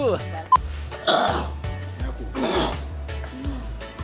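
A man coughing and clearing his throat hard, twice about a second and a half apart, trying to dislodge a fish bone stuck in his throat. Background music plays underneath.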